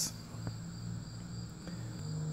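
Quiet background: a steady low hum with a faint, steady high-pitched whine, and a single light click about half a second in.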